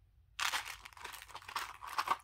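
Rustling and crinkling of small packaged sweets being handled and packed into a small quilted zip pouch, starting suddenly about half a second in and running on with many small clicks.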